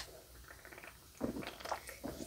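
Faint gulping and swallowing as a person drinks from a can, with a few soft gulps in the second half.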